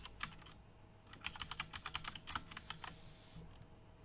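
Typing on a computer keyboard: a few keystrokes at the start, then a quick run of keystrokes through the middle that stops shortly before the end.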